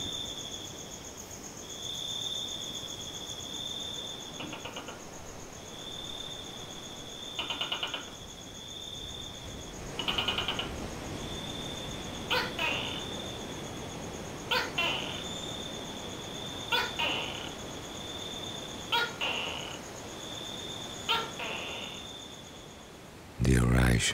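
Night insects calling: a high, steady trill that comes in phrases of about a second and a half with short gaps, over a fainter, higher, continuous whine. In the second half, sharp short calls repeat about every two seconds, likely from another small animal.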